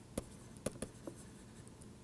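Faint taps and scratches of a stylus writing on a tablet or pen display, with a few sharp clicks in the first second.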